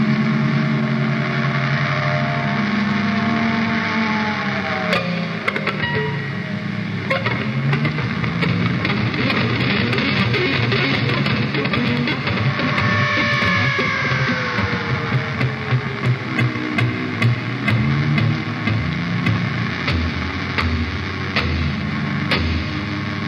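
Heavy metal band playing: distorted electric guitars hold long notes that slide down in pitch, over drums and cymbals that grow heavier in the second half.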